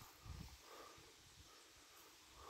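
Near silence: faint outdoor ambience, with a few weak low rumbles in the first second.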